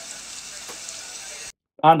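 Steady background hiss and room noise picked up by an iPad's built-in microphone with no noise isolation on. It cuts off abruptly about one and a half seconds in.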